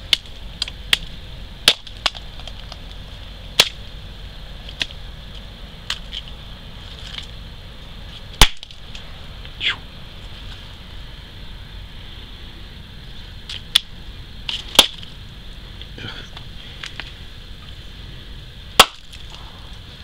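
Rotten goose eggs being broken open, with about a dozen sharp pops and cracks at uneven intervals, the loudest about eight seconds in and near the end; the pops come from decomposition gas bursting out of the shells. A steady high-pitched hum runs underneath.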